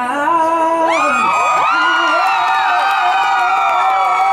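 Live concert: a male singer holds a long sung note into the microphone, and from about a second in a crowd screams, whoops and cheers over it.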